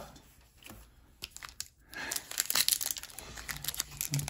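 Pokémon TCG booster pack's foil wrapper being torn open and crinkled, starting after a quiet first second and turning to dense crinkling about two seconds in.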